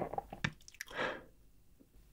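Close-miked mouth sounds of chewing the last of a dessert mouthful: wet clicks and squishy smacks, then a short, louder noisy sound about a second in, followed by quiet.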